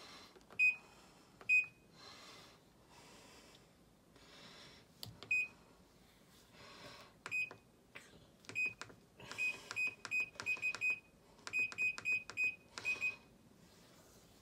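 Control-panel button beeps from a Sharp ES-GE7B top-loading washing machine as its settings are keyed in, each short high beep with the click of the button. There are single beeps spaced out at first, then a quick run of about a dozen from repeated presses near the end.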